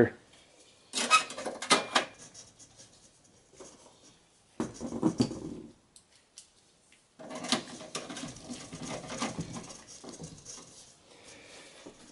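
Intermittent handling noise from an open steel computer case as the PCI card retention bracket is put back. There are sharp clicks about a second in and just before two seconds, a short clatter around five seconds, then softer rustling and scraping of metal parts.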